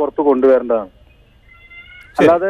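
A man's voice over a telephone line, speaking one drawn-out phrase that breaks off about a second in, followed by a pause filled only by faint steady line tones.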